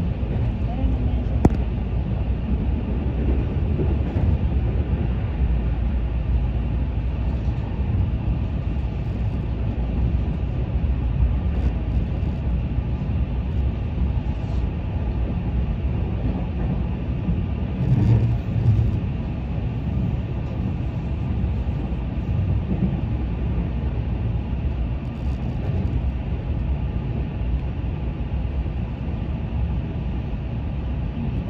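Electric commuter train running along the line, heard from inside the carriage: a steady low rumble of wheels on rails, with a sharp click about a second and a half in and a brief louder swell a little past the middle.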